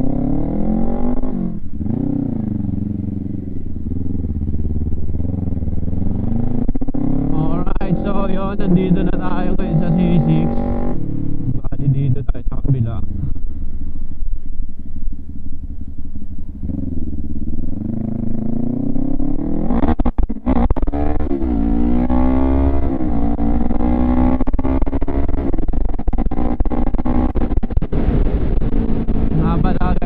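Kawasaki Ninja 400's parallel-twin engine through an HGM aftermarket exhaust, ridden hard. The revs climb and drop again and again as it pulls through the gears. There is a lower, steadier stretch in the middle, and a sharp break about twenty seconds in before the revs rise again.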